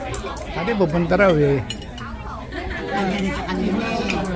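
People talking over a meal, loudest in the first half, with a few clinks of cutlery against plates and bowls.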